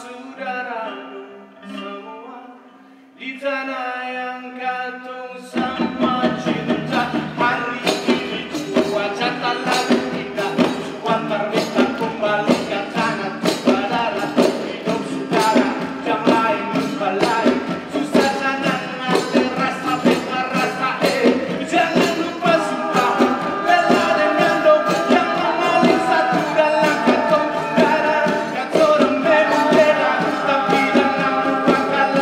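Ambonese folk ensemble from Indonesia: a lead singer sings alone at first. At about five and a half seconds, frame drums and standing drums come in with a fast, steady beat under the singing, and the music grows louder toward the end.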